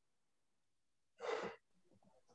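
One short breath out, a sigh close to the microphone, about a second in, after near silence.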